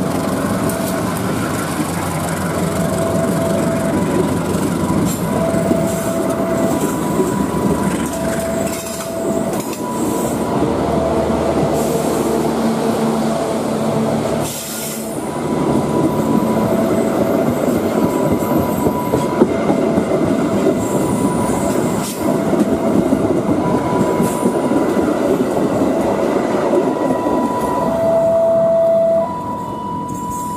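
Passenger train hauled by a CC 201 diesel-electric locomotive running past, its wheels clacking over the rail joints. Throughout, an electronic warning signal alternates between a low and a high tone about every second.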